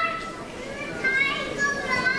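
High-pitched children's voices in a hall: a few short calls and squeals over a general murmur of chatter.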